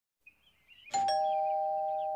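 Two-tone doorbell chime: a 'ding-dong' about a second in, the second note lower than the first, both ringing on and slowly fading.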